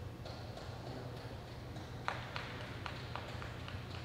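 A horse walking and halting on arena dirt: a series of light, irregular clicks from hooves and tack, the loudest about two seconds in, over a steady low hum.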